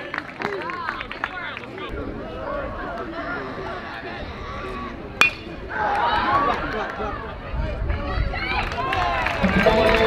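Crowd chatter at a baseball game, broken about five seconds in by a single sharp, ringing ping of a metal bat hitting a pitch, after which the crowd voices grow louder.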